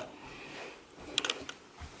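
A short run of faint, quick clicks a little over a second in, over quiet room noise.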